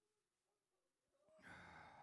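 Near silence, then about a second and a half in a faint, breathy sigh from a man praying into a close handheld microphone.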